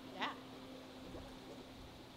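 A brief vocal sound from a person, such as a short exclamation, a quarter second in, over a steady low hum in the room.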